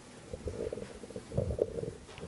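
Handling noise from a microphone being adjusted on its stand: low, irregular rumbles and bumps picked up by the mic, in two clusters, the louder near the end.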